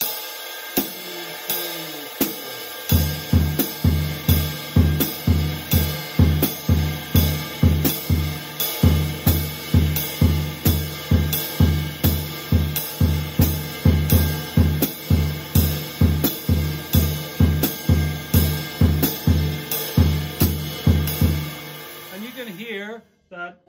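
A jazz drum kit playing a straight ride cymbal beat with the hi-hat on two and four, and the bass drum playing crotchet (quarter-note) triplets across the time. Only the cymbals sound for the first three seconds; then the bass drum comes in with steady, evenly spaced hits.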